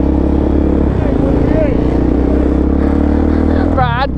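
Suzuki DR-Z400SM supermoto's single-cylinder four-stroke engine running steadily under way, heard from on the bike, with a small change in the engine note about a second in.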